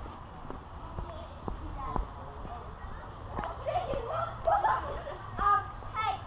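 Footsteps on asphalt, sharp knocks about two a second, with people talking in the background from about halfway through.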